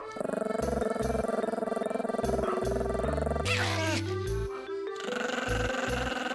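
Pomeranian growling in two long, rapidly pulsing stretches, broken by a short falling whine about three and a half seconds in, over background music with a bass beat.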